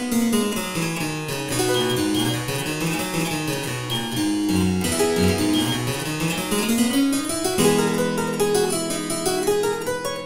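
Harpsichord playing a passage of quick running notes, with a rising run a little past the middle and low notes sounding under the upper line in the last couple of seconds.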